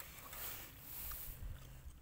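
Faint handling sounds of a snap-on presser foot being unclipped from a sewing machine and lifted away: soft low knocks and a faint click or two.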